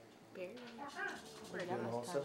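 Indistinct voices of students talking among themselves, starting about half a second in and growing louder toward the end.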